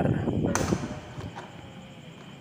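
A single sharp plastic click about half a second in, from hands working a part of the printer's plastic casing loose, followed by faint handling noise.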